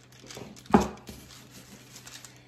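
Wooden rolling pin rolling out clay on parchment paper, with faint paper rustling and one sharp knock a little under a second in.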